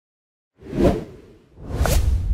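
Two whoosh sound effects of an animated intro: silence at first, then one swells and fades about a second in, and a second one rises near the end into a low rumble.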